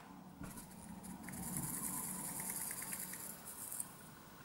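Whey protein powder tipped from a plastic scoop into a ceramic bowl: a faint, dry rustling hiss with light rapid ticks, starting about a second in and stopping just before the end.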